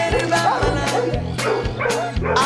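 Upbeat background music with a steady bass line and a regular drum beat.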